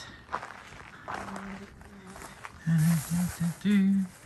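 Footsteps and small knocks over rock, then a man's voice making several short hums or grunts without words in the second half.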